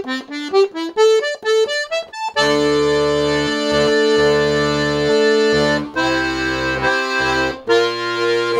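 Castagnari Handry 18 G/C diatonic button accordion (melodeon) playing a quick run of single treble notes, then full sustained chords with the bass buttons joining about two seconds in. The chord changes near six seconds in.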